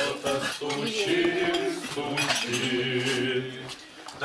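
Dishes and cutlery clinking and clattering as plates are handled and gathered at a table, with voices sounding underneath.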